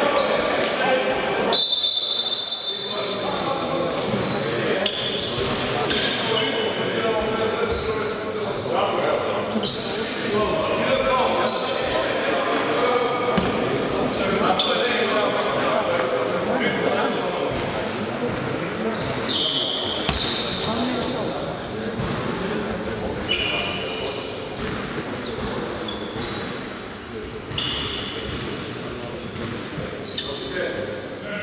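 Basketball hall during a break in play: indistinct voices of players and spectators echoing in the large hall, a basketball bouncing, and many short, high sneaker squeaks on the hardwood floor.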